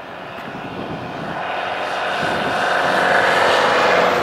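A motor vehicle's engine approaching along the road, a steady drone that grows steadily louder as it draws near.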